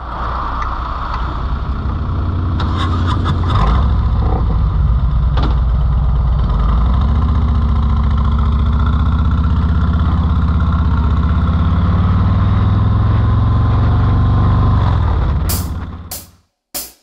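Harley-Davidson Road King's V-twin engine idling, then rising in pitch about seven seconds in as the bike pulls away and runs steadily. There are a few clicks a few seconds in.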